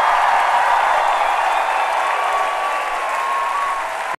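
Large concert crowd applauding and cheering, a dense steady wash of clapping, just after a rock song has ended.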